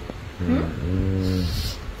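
A man's low, drawn-out "ừ": a steady, hum-like grunt held for about a second and a half, with a short breathy hiss near its end.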